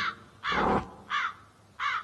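Crow-like bird calls: three harsh caws, each falling in pitch, the first and loudest about half a second in.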